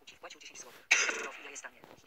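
Soft speech, broken about a second in by a loud, sudden throat-clearing that fades over about half a second.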